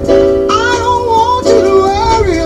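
A song with singing: a voice carries a gliding melody over held instrumental chords.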